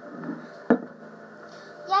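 Acoustic guitar struck once about two-thirds of a second in, its strings ringing on steadily for about a second before a voice comes in.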